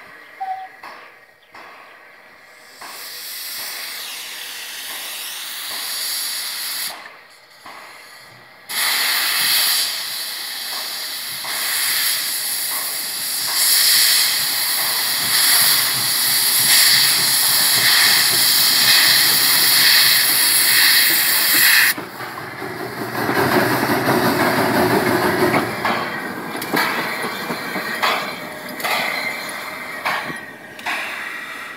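Narrow-gauge steam locomotive hissing loudly, a steady rush of escaping steam that is strongest from about nine seconds in and cuts off sharply about twenty-two seconds in. After that the locomotive works slowly along the track with a rougher, beating exhaust.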